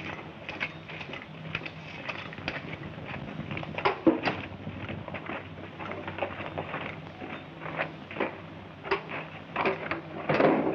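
Footsteps and scuffs on a rocky mine floor, with irregular knocks; the loudest knock comes about four seconds in. A steady hum from the old soundtrack runs underneath.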